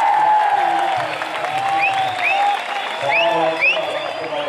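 Crowd applauding, with voices and short cheers rising over the clapping.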